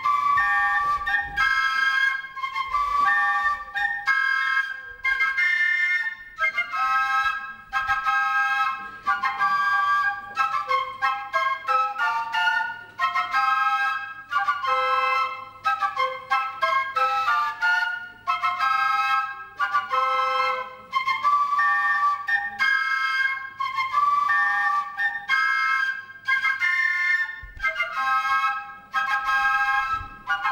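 A group of transverse flutes playing a melody together, in short phrases with brief pauses between them.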